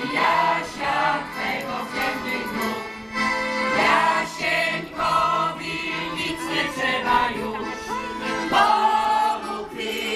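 Large massed choir of folk-ensemble singers, mostly women's voices, singing a Polish patriotic song together.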